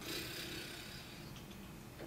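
Quiet room tone in a small room during a pause in conversation, with a soft, hesitant "I" at the start.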